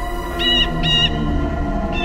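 Two short bird calls, about half a second apart, with a third call starting near the end, over a low sustained music drone.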